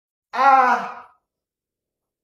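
A man's single loud pained cry, under a second long and tailing off, as he is bitten by a false water cobra.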